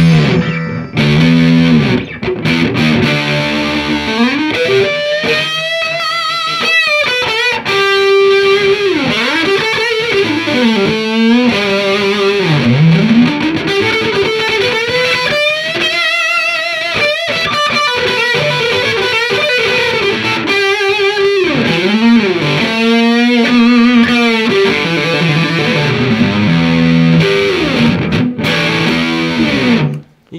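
Sterling by Music Man LK100 electric guitar played through a crunch overdrive pedal into a Fender Twin Reverb amp, giving a clean-edged crunch tone. Chords near the start and near the end frame single-note lead lines with string bends and wide vibrato.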